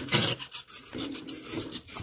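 Cardboard rocket body tube rubbing and scraping on a desk as it is handled and turned by hand, with a sharper knock just after the start.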